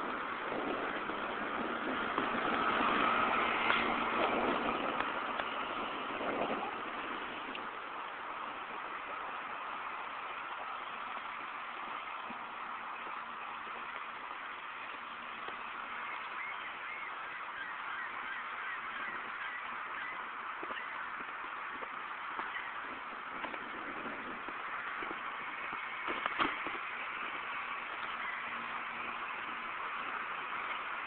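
Distant street traffic, a steady wash of car noise, louder for a few seconds near the start. A single sharp click sounds near the end.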